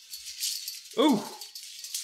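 Faint, hissy rattling scuffle noise from a film's street-fight soundtrack. About a second in, a man gives a short 'ooh' of reaction.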